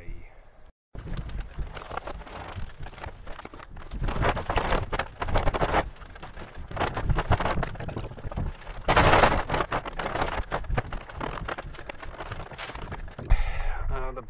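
Wind rumbling on the microphone and crackling, rustling handling noise, with a louder rustling burst past the middle. The sound drops out completely for a moment about a second in.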